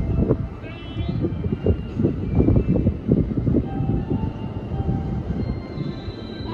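A standing JR E531 series electric train idling at the platform with its doors open: a low, uneven rumble, with faint thin tones about a second in.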